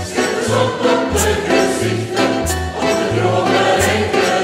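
Large mixed choir singing together with instrumental accompaniment: a low bass line moving in short notes and a bright percussive accent recurring about every second and a half.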